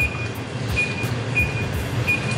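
Electronic keypad of a wall oven beeping as its buttons are pressed to set a 30-minute cooking time: short, high single beeps, one per key press, about every half second, over background music with a steady beat.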